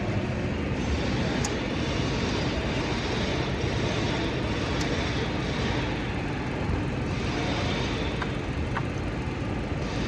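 Steady mechanical drone with a low hum, with a few light clicks as the hood switch's wiring connector is handled.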